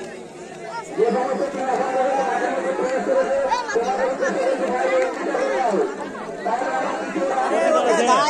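Men's voices talking and calling out over one another. One voice holds a long call from about a second in.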